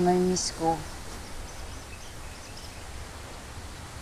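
A few spoken words at the start, then a steady low hiss of outdoor background noise with nothing else standing out.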